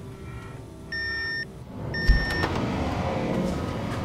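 Two long electronic beeps about a second apart, each lasting about half a second. A heavy thump lands with the second beep as the front door is pushed open, followed by a steady rumbling noise.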